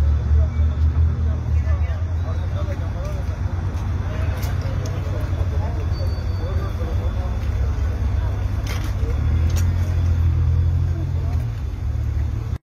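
Low steady rumble of car engines running close by, with bystanders talking in the background. The rumble is heaviest at the start and again a few seconds before the end.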